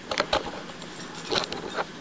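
Handling noise from a cheap camera tripod being adjusted: a few short clicks and rattles near the start, then more about a second and a half in.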